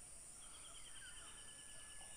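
Faint, near-silent outdoor ambience: a steady high insect drone, with a faint rapid high trill starting about half a second in and a thin faint whistle in the second half.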